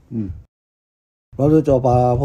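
Speech only: a short "hm", a brief silent gap, then talking resumes a little over a second in.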